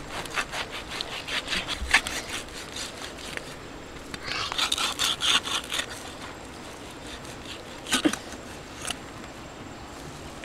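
A cleaver cutting back and forth through a roasted pig's head, the blade rasping through the charred skin and meat in quick strokes, in two spells. A couple of sharp knocks near the end.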